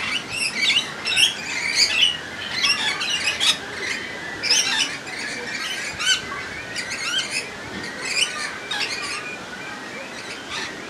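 Bird calls: a rapid series of short, high chirps and squawks in overlapping clusters, busiest in the first half.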